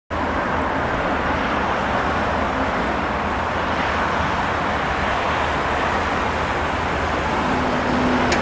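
2007 Komatsu WA320 wheel loader's diesel engine running steadily on a cold morning start.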